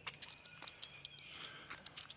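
Faint, irregular clicks and ticks, roughly a handful a second, over a quiet outdoor background with a thin steady high tone.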